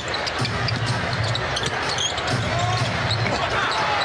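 Basketball arena crowd noise during live play, with a basketball being dribbled on the hardwood court.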